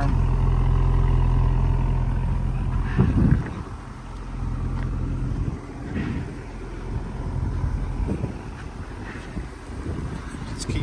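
A 2021 Audi SQ5's 3.0-litre turbocharged V6 idling, its low exhaust rumble heard close to the tailpipes. It is steady for about three seconds, then drops away after a brief handling knock. Fainter rumble and rustle follow.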